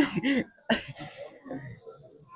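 A man coughing, with short throaty sounds: a loud burst at the start and a second cough less than a second later, then fainter throat sounds.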